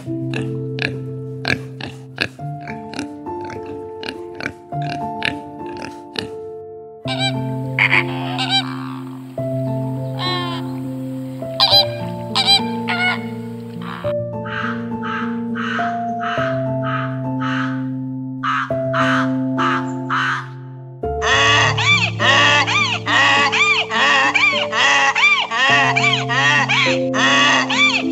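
Soft piano music with animal sounds mixed over it. A pig grunts and snuffles in the first few seconds, followed by a series of short repeated animal calls that grow dense and busy over the last five seconds.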